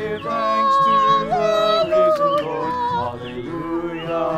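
A man and a woman singing a hymn together, holding long notes and gliding between them.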